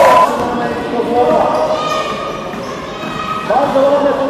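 Basketball bouncing on a wooden gym floor, with players and spectators shouting in a large echoing hall.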